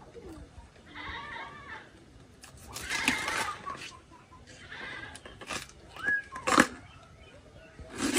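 Dry banana leaves and leaf sheaths crackling and snapping as they are pulled and cut from a banana plant with a knife, with a couple of sharp snaps near the end. An animal calls several times in the background, loudest about three seconds in.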